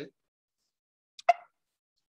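Near silence broken by a single short mouth click, a lip smack, about a second and a quarter in.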